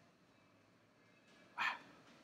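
A short, breathy, half-whispered "wow" near the end, over quiet room tone.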